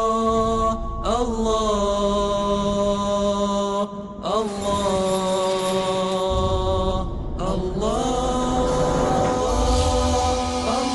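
Theme music of chanted vocals: long held notes, each reached by an upward slide, with short breaks roughly every three seconds. A low rumble joins underneath about halfway through.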